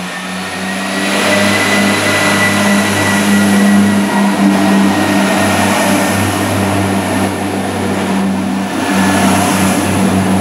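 Irish Rail 22000 class diesel multiple unit pulling away from a station platform, its diesel engines running under power with a steady low hum. The sound grows louder about a second in as the train picks up speed past the platform.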